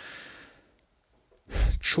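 A man's soft sigh, an audible breath out that fades away within about half a second, then speech resumes near the end.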